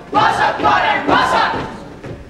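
A group of young voices shouting in unison, drill-style: three loud shouted calls in quick succession, trailing off near the end.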